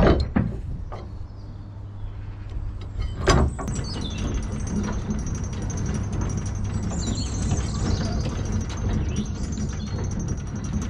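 Metal chain and fittings of a Dutch barge's mast-lowering gear clanking, with two loud knocks about three seconds apart, then a steady mechanical noise.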